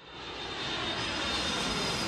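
Jet airplane flyby sound effect: a rushing engine noise that swells up over the first second and then holds steady, with a faint high whine.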